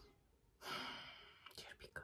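A woman's soft sigh, an audible breath out starting about half a second in and fading away over a second, followed by a few faint mouth clicks.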